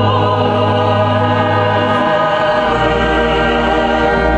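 Mixed choir singing with a chamber orchestra of strings and brass in held chords. The bass note steps down about two and a half seconds in.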